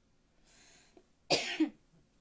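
A woman coughs once, sharply, about a second and a half in.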